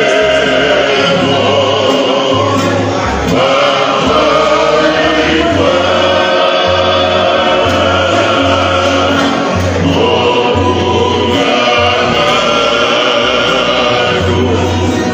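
A group of men singing a Tongan hiva kakala song together in harmony, accompanied by strummed acoustic guitars.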